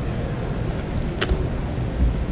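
Steady low rumble of room background noise, with one sharp click a little after a second in.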